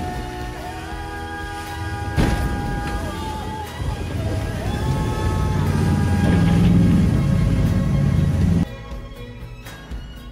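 Background music over the steady noise of a jet boat running through rapids; a little before the end the boat noise cuts off and only the music is left.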